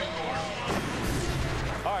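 Television broadcast transition sound effect: a rising whoosh followed by a deep, sustained low boom.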